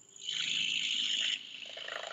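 Scrub&Go cordless power scrubber running, its stiff nylon brush vibrating against tile and grout with a high, hissy buzz. After a moment's gap at the very start the scrubbing is loudest, then it drops to a lower, quieter buzz about halfway through.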